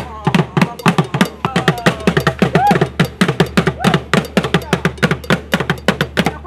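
Fast, steady drumming on traditional hand drums, struck by hand several times a second, with a few rising-and-falling vocal calls over the beat.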